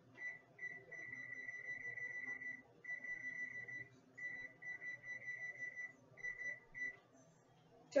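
Electronic beeping from a Whirlpool range's oven control panel as its keys are pressed to lower the oven temperature: one high tone, heard in irregular stretches, some short beeps and some held for over a second, stopping about seven seconds in.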